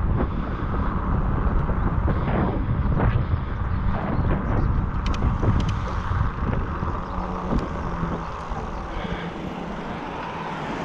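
Wind buffeting the microphone of a bicycle-mounted action camera while riding, with road and tyre rumble underneath and a few light ticks about halfway through. The noise eases a little in the last few seconds as the bike slows into a turn.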